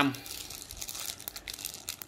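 Clear plastic bags crinkling in a run of small crackles as the audio cables packed in them are handled.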